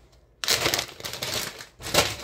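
Rustling and crinkling handling noise close to the microphone, starting about half a second in, with another brief rustle near the end.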